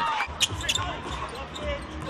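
Basketball arena ambience during play: a steady low crowd rumble in a large gym, with a few sharp knocks of a basketball bouncing on the hardwood court.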